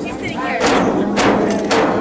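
Alaska Native frame drums beaten in a steady rhythm of about two beats a second, with a group of voices singing over them.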